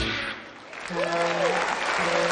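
Audience applauding as the song's music ends. About a second in, a steady pitched tone comes in, with a short rise-and-fall glide in pitch.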